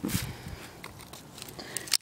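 Dry grass and twigs crackling and rustling as a knife and a dry stick are handled, with a sharp click at the start and another near the end.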